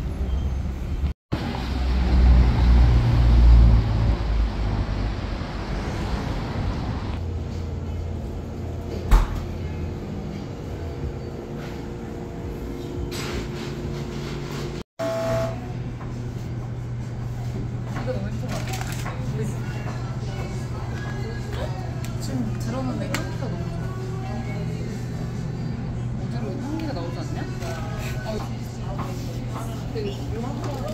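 Street traffic noise, with a vehicle passing as a loud low rumble a few seconds in. After a cut, indoor room sound: a steady low hum with people talking faintly in the background.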